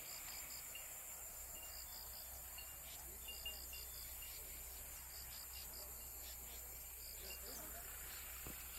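Faint insects chirping in short groups of three or four pulses, about every second and a half, over a steady hiss.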